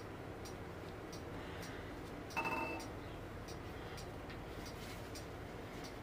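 Quiet room tone with faint, unevenly spaced ticks. A brief pitched sound comes about two and a half seconds in.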